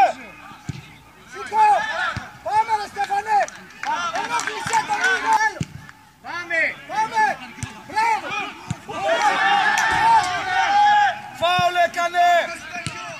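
Voices at a football match shouting and calling out in short, high-pitched cries, one after another.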